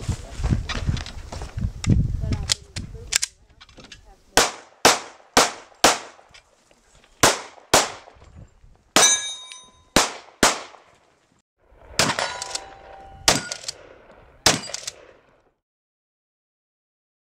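Semi-automatic pistol fired about a dozen times in quick strings during a timed competition stage. The first four shots come about half a second apart, then the rest follow in short groups, a few of them trailed by a brief metallic ring. Before the shooting there are a few seconds of low rumbling movement noise.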